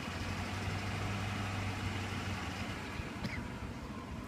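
A Ford's engine held at raised revs, heard from inside the cab with the heater blower running, for an alternator output test under electrical load. The steady engine note weakens a little past halfway.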